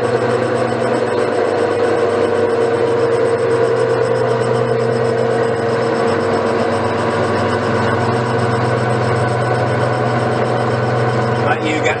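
Metal lathe running steadily as an adapter piece is machined, its motor and gears giving a constant whine.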